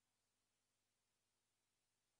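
Near silence: only a faint, steady hiss of the recording's noise floor.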